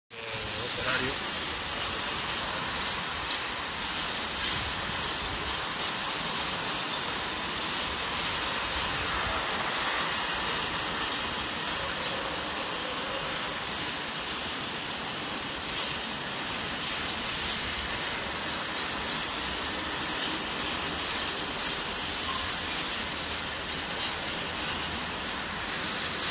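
A train running on the station tracks: a steady, even rumble with no break.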